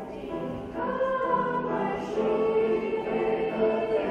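A school choir of young voices singing held notes, growing louder about a second in.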